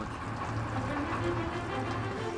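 The 8 horsepower car engine of a 1941 Jowett trailer fire pump running at a steady idle, an even low hum. Faint background music comes in under it.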